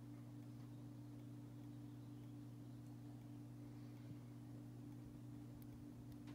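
Near silence with a faint, steady low hum.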